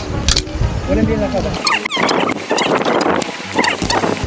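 A handboard, a hand-sized skateboard, flipped by hand and landing with a clack on a stone ledge about a third of a second in. Voices and a hissy rush of noise follow.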